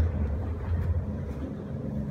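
A steady low hum, with faint shuffling of feet and rustling cloth as two people move on a padded mat while one is taken down into an arm lock.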